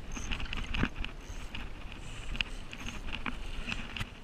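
Wind buffeting the microphone and water sloshing against a seawall, with a spinning reel being wound in and a hooked mangrove jack splashing at the surface. Scattered sharp clicks and splashes come through the steady noise.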